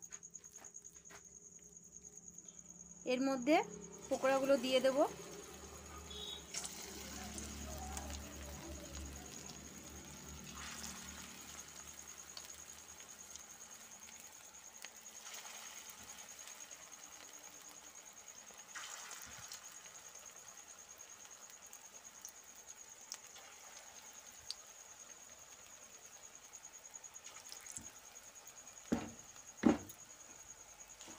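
Chicken pakoras deep-frying in hot oil in a metal wok: a low, steady sizzle and bubbling, with a thin steady high-pitched whine over it. Two sharp knocks near the end.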